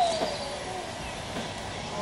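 Quiet outdoor background with faint birdsong. A voice trails off right at the start.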